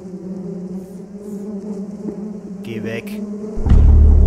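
Horror film soundtrack: a steady low droning hum, then a loud deep rumble that swells in suddenly about three and a half seconds in.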